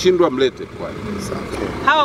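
Speech in Swahili from a man, then a pause of about a second and a half filled only by steady, low outdoor background noise, then a woman starts speaking near the end.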